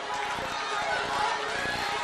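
A conference audience responding with overlapping voices, murmuring and calling out indistinctly with no single clear speaker.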